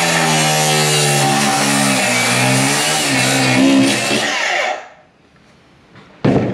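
DeWalt 9-inch FlexVolt cordless cut-off saw with a metal-cutting disc grinding through a shoe's steel toe cap. The motor pitch sags under load about two seconds in and picks back up. The saw is then released and winds down about five seconds in.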